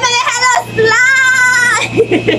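A high-pitched voice: a few quick sung syllables, then one long held note lasting about a second, wavering slightly.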